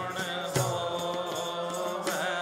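Sikh kirtan: a man sings a shabad over steady harmonium chords, with tabla strokes and deep bass-drum thuds marking the rhythm.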